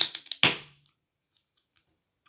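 Aluminium beer can being cracked open: a sharp click of the pull tab, then a short hiss of carbonation escaping that dies away within about a second.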